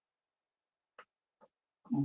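Near silence with two faint, brief ticks about a second in and half a second apart, then a man's voice begins right at the end.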